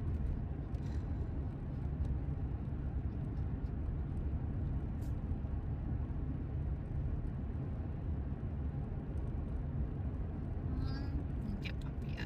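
Steady, low road and engine noise inside a car cruising at highway speed.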